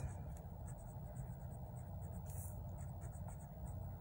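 Faint scratching of a pen writing words on a paper workbook page, over a steady low hum.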